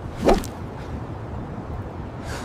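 AI-generated sound effects from a Veo 3 clip of a rooftop parkour leap: one sharp whoosh about a third of a second in as the runner jumps, over a steady background hiss.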